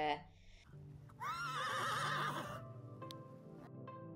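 A horse whinnying once, a single call of about a second and a half that rises and then wavers in pitch. Background music comes in right after it.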